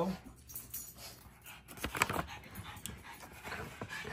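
A dog panting, with a few sharp clicks about two seconds in.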